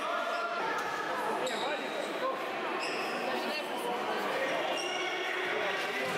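Futsal ball being kicked and bouncing on a sports-hall floor, with players and coaches shouting, echoing in the large hall.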